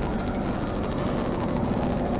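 Experimental electronic noise music: a dense, steady synthesizer drone with a rumbling, noisy low end and thin, high whistling tones that come and go above it, one gliding slightly upward about halfway through.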